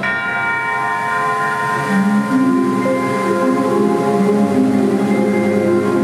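Orchestral show music: a bell-like chord is struck at the start and rings out, and low sustained notes come in about two seconds in.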